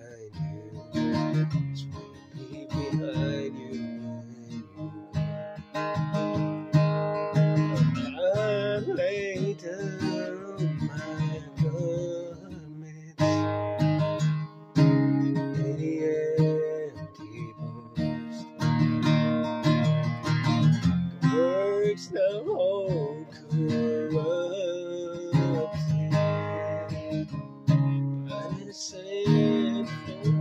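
Capoed acoustic guitar strummed, playing a run of chords.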